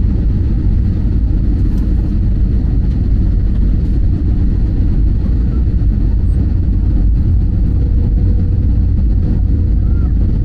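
Airliner cabin noise heard from a window seat: a steady low rumble of jet engines and airflow during the descent, with a faint steady hum above it.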